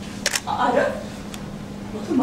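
Two sharp clicks in quick succession, then a brief burst of a person's voice, over a steady low hum.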